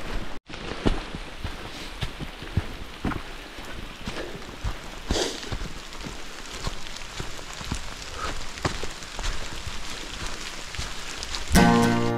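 Steady rain falling on a hard surface, with scattered sharp drip impacts. A country song with singing comes in just before the end.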